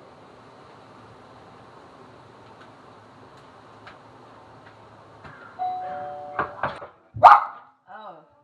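Two-tone doorbell chime ringing ding-dong, a higher note then a lower one, about five and a half seconds in. A couple of sharp knocks and one loud short burst follow near the end.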